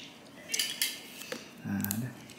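Light handling noises as a cake is unwrapped: a few short rustles and clinks while the ribbon band is pulled off the cake on its box base.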